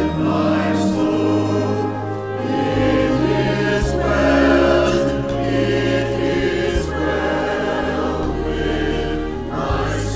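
Church choir singing with accompaniment, the voices moving over long, held low notes.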